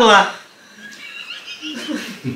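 Women laughing hard: a high, squealing laugh that breaks off about a quarter second in, followed by quieter, breathless laughter.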